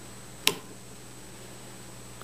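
A single short, sharp click about half a second in as the metal prongs of a twist-up cork puller and the pulled natural cork come clear of the glass bottle neck, over a steady low room hum.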